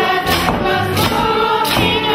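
A folk group singing together to a live band of accordion, tuba and fiddle, with a steady beat.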